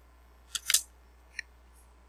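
A laminated picture card being handled and slid on a whiteboard: a click about half a second in, a brief scrape right after it, and a faint tick a little later.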